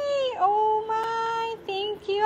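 A high voice singing long, steady held notes, stepping down to a lower note about half a second in, with a short note near the end.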